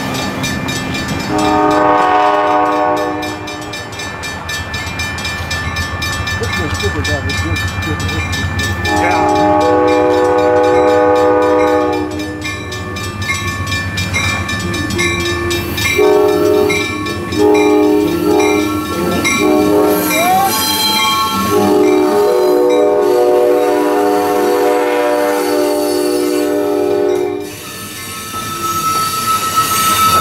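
Amtrak P42DC diesel locomotive approaching and passing, its horn sounding two long blasts, a run of short ones, then a final long blast over a building low engine rumble. Near the end, as the cars roll by, a high steady wheel squeal sets in.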